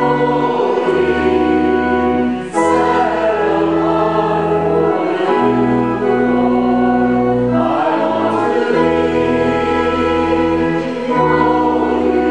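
A congregation singing a hymn together over sustained held chords, phrase by phrase, with brief breaks between lines.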